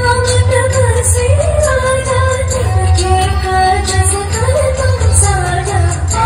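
Indian-style song: a singing voice carrying a wavering melody over a steady low bass and a light regular beat.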